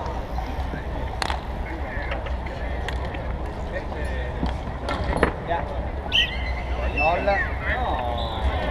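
Spectators' voices chattering around a bike polo court over a steady low rumble, with a couple of sharp knocks about a second in and about five seconds in; one voice comes through more clearly near the end.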